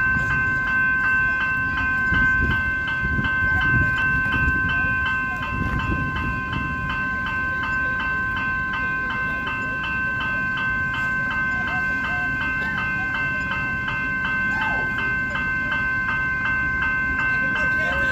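Electronic level crossing bells ringing in a quick, steady, unbroken rhythm while the crossing is closed. Under them runs the low rumble of an Alstom Comeng electric suburban train pulling into the station, heavier in the first few seconds and then easing as it comes to a stop.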